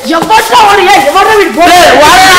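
Speech only: boys' voices talking loudly, fairly high in pitch.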